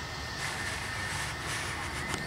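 Distant Airbus A321 jet engines at taxi power: a steady low rumble with a thin, high, steady whine over an even hiss.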